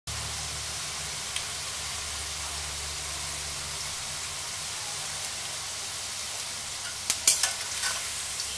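Okra sizzling in oil in an iron kadai, a steady hiss. Near the end a metal spatula clicks and scrapes against the pan as the okra is stirred.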